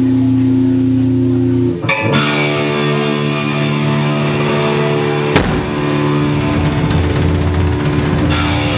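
Live rock band holding long, ringing electric guitar and bass chords, changing to a new chord about two seconds in, with a single sharp hit on the drum kit about five seconds in.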